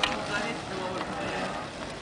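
Faint voices talking in the background over an even outdoor noise, with a sharp click at the start and another about a second in.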